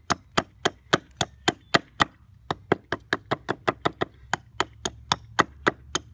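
Small hatchet chopping a block of old fence-post wood to rough out a spoon blank: quick, sharp strikes about four a second, with a brief pause about two seconds in.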